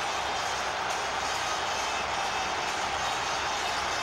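Football stadium crowd celebrating a goal: steady, continuous cheering from the stands.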